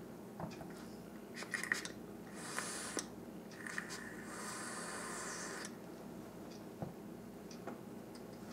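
A person drawing on a Helios rebuildable dripping atomizer and blowing out the vapor: a few faint clicks, a short hiss, then a longer steady breathy hiss of about two seconds as the cloud is exhaled.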